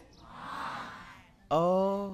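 A man's audible in-breath between phrases, a soft hiss lasting about a second. He then resumes speaking with a drawn-out vowel near the end.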